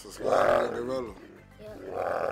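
Two roars from an animated Sasquatch character in the video being played, each a little under a second long and about a second apart, heard through the computer's speakers.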